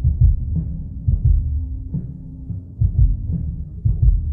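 Instrumental hip-hop beat: deep bass-drum hits in a repeating, uneven pattern over a low held tone.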